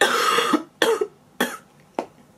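A woman coughing into her fist, three coughs in a row, the first the longest, from what she calls a chest and throat infection.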